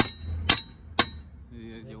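Three sharp metallic clinks about half a second apart, lug nuts and wrench knocking against the hub of a car's steel wheel as the wheel is being bolted on. A man's voice comes in near the end.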